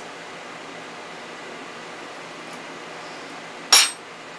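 Steady hum of a Ninja Foodi's fan running while it roasts, with a single sharp clink of a spoon on kitchenware near the end.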